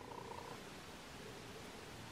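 Faint steady background noise with no distinct sound event, as hands work yarn with a crochet hook.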